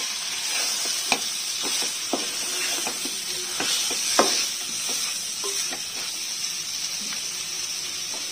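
Chicken pieces and ground masala sizzling in a nonstick pot as a spatula stirs them, with scattered knocks and scrapes of the spatula against the pan.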